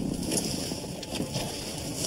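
Pickup truck's driver door opening and the driver climbing out, with a few clicks and knocks over a steady low rumble.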